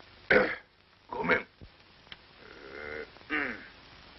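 A man's wordless vocal sounds: a sharp, loud breath or grunt just after the start, another about a second in, then a drawn-out low murmur and a short falling grunt near the end.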